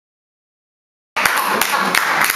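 Silence, then about a second in, audience clapping with voices cuts in suddenly, dense and continuous.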